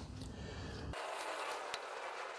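Quiet workshop room tone: a faint steady hiss with a low hum that cuts off abruptly about halfway through, and one faint click near the end.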